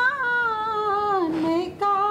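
A woman singing unaccompanied in Hindi on a long held vowel. The note lifts slightly at first, then slides down in pitch and breaks off briefly near the end before she starts a new, higher note.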